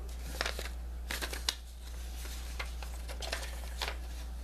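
Sheet of paper being handled: scattered short rustles and light crinkles, several close together about a second in and again near the end, over a steady low hum.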